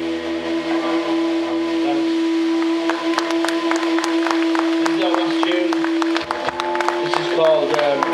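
Live rock band playing: amplified electric guitars hold a sustained droning chord while light, rapid ticks from the drum kit come in a few seconds in.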